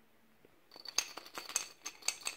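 Frozen bullaces and sugar rattling and clinking against the inside of a glass swing-top bottle as it is shaken, starting just under a second in. There is no liquid in the bottle yet, so the hard frozen fruit knocks straight on the glass, which rings.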